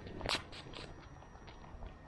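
Faint footsteps on wet paving, with one sharp click about a third of a second in, over quiet outdoor background.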